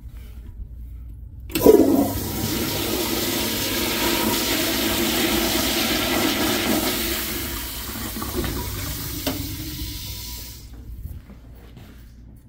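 Crane Correcto toilet flushing. The rush of water starts suddenly about a second and a half in, runs steadily for several seconds as the bowl swirls, then tapers off near the end.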